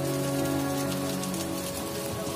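Waterfall spray falling onto rock, a steady patter of drops, under background music of long held notes.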